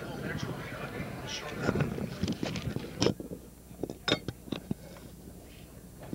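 Indistinct low voices and handling noise for the first half, then a handful of sharp clicks and knocks between about three and five seconds in, as items are moved on a table.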